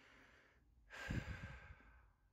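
A person's quiet breathy exhale, like a sigh, about a second in, after a faint airy breath.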